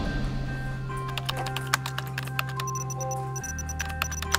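Quick, irregular clicking of keys being typed on a laptop keyboard, starting about a second in, over a music score of sustained notes whose bass note shifts near the end.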